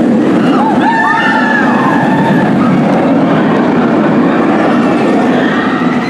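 Bolliger & Mabillard inverted roller coaster train running along its steel track, a loud steady rumble.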